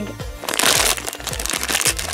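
A foil blind-bag packet being crinkled and torn open by hand: a run of crackles with a louder rip about half a second in, over background music.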